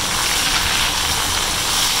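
Chicken pieces, sliced onions and garlic paste frying in hot ghee in a pan, a steady sizzling hiss.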